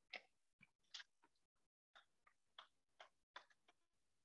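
Near silence with a few faint, separate clicks of chalk tapping on a blackboard as a line of writing starts, the last three close together near the end.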